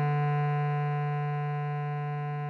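A single long bass clarinet note, written E, held steady and slowly fading, over a sustained G major chord on a keyboard.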